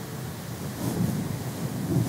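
Low, even rustling noise in a pause between spoken sentences, picked up by a lapel microphone.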